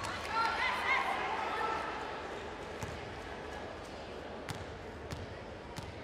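A basketball bouncing on a hardwood court, about four single sharp knocks spread over the second half, as the shooter dribbles before her free throw. Under it is the steady murmur of an arena crowd, with voices calling out near the start.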